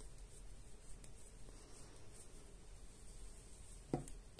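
Faint rustling and scratching of yarn being worked with a metal crochet hook, over a low, steady room hum.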